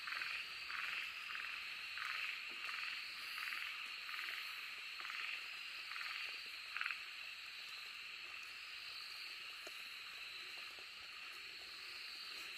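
Okinawa narrow-mouthed frog calling: a series of short notes, two or three a second, that stops about seven seconds in. A steady high insect drone runs underneath.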